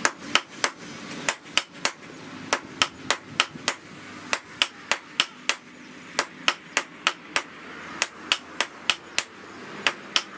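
Hammer blows on red-hot disc-plough steel on an anvil during hand forging. Each blow is a sharp metallic strike, about three a second, in runs of three to five with short pauses between.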